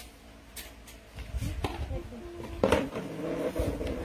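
Indistinct background speech in a small room, with a few short clicks and knocks and a low rumble underneath.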